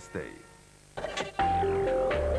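Electronic TV programme intro jingle. After a few clicks, a chime-like synth melody of held notes that step in pitch comes in about two-thirds of the way through, over a low bass and a falling swoosh.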